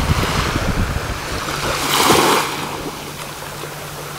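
Small waves lapping on a sandy beach, one wash swelling up about two seconds in and then fading. Wind rumbles on the microphone in the first second or so.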